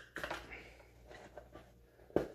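Faint rustling and a few light clicks as hands work inside a nylon fanny pack on a table, handling the Kydex holster in it.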